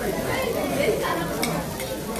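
Pork belly sizzling on a tabletop Korean barbecue grill pan, with a sharp click about one and a half seconds in.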